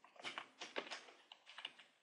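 Typing on a computer keyboard: a quick, uneven run of faint keystroke clicks as a word is typed.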